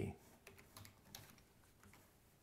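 Faint typing on a computer keyboard: a handful of light key clicks over the first second and a half.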